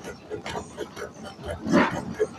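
Indistinct voices of people nearby, in short broken snatches, with one louder short call about three-quarters of the way through.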